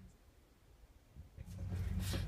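Near silence: room tone, with faint low room noise coming back about a second and a half in.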